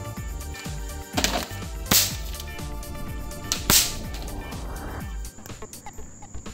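Handling noise on a phone's microphone as the phone is moved about: three sharp swishing knocks, about one, two and almost four seconds in, over a low steady sound that stops about five seconds in.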